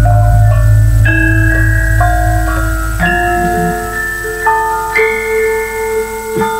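Javanese gamelan playing: bronze keyed metallophones struck with mallets ring out a melody, one note every half second to a second. A deep low gong hum, struck just before, fades away over the first four seconds.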